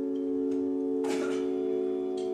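Clean electric guitar ringing out a held chord, with a fresh strum about a second in.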